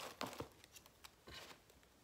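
Faint handling of products and packaging: two light clicks early on and a short crinkly rustle a little past the middle.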